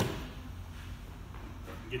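A single sharp thump at the very start, then quiet room tone.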